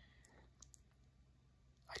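Near silence: room tone with a few faint, short clicks, and a man's voice starting at the very end.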